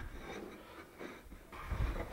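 Faint handling noise of a thin kerf-cut wooden strip being set into a wooden ring on a workbench, with a low thump near the end.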